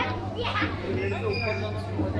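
Indistinct voices of children and adults chattering, over a steady low hum.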